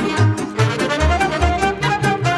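Romanian folk song played back from a recording: a fiddle-led melody over a steady beat of bass notes.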